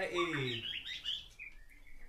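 A few short, faint bird chirps, high-pitched, under a spoken phrase that ends about half a second in.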